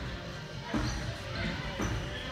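Dull thuds of feet landing and pushing off on a padded gym floor and vaulting boxes, two of them, over echoing background voices in a large hall.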